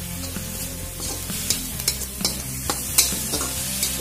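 Metal spatula stirring and scraping chopped amaranth greens around an aluminium pan, over a steady sizzle of the greens frying. The scrapes come as a series of sharp strokes in the second half.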